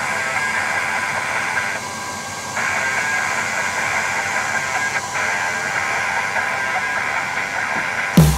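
LaserTree K60 diode laser module cutting wood on a K1 Max: a steady whirring hiss from the laser head's cooling fan, which dips briefly about two seconds in.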